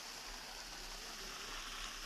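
Faint, steady hiss of water running through a concrete coffee-washing channel as washed beans are pushed through its gate.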